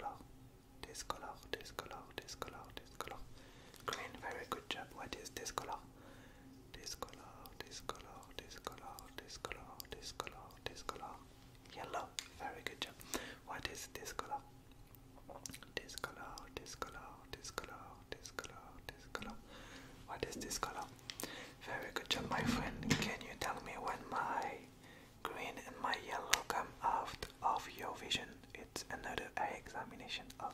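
A man whispering softly in short phrases, with light handling clicks and a soft low thump about two-thirds of the way through.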